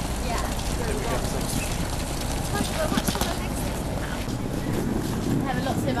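Indistinct voices outdoors over a steady low rumble, with a few short clicks around the middle.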